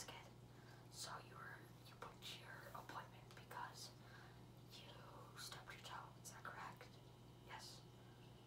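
Soft whispered speech in short breathy phrases, with no voiced pitch, over a steady low hum.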